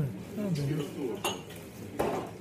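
Voices talking in a bar, with a single ringing clink of crockery about a second in.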